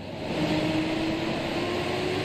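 Diesel school bus engine running: a steady hum with a faint tone that rises slightly.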